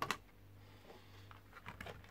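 Small miniature figures clicking and rattling lightly in a clear plastic tub as it is handled: one sharp click at the start, then a scatter of small ticks in the second half.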